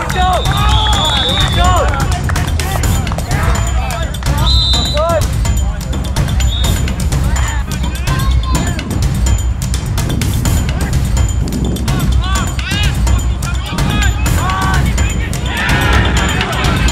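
Sideline spectators calling out and chattering, with no clear words, over a constant low rumble on the microphone.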